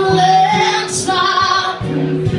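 A woman singing long held notes over an acoustic guitar, the melody stepping to a new note about half a second in and again about a second in.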